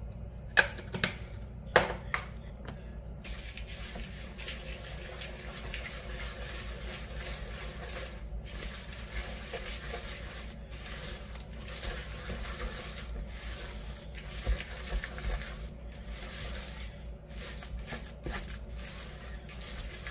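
Wooden spoon stirring a thick mixture of oats, seeds and nuts in a bowl: a couple of knocks in the first two seconds, then steady scraping and rustling as the spoon works through the mix.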